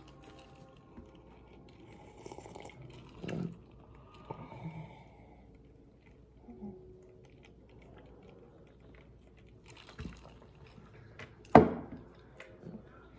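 Faint sipping and swallowing of a drink from a plastic cup, with a few small scattered mouth and cup noises. There is one short, much louder sound near the end.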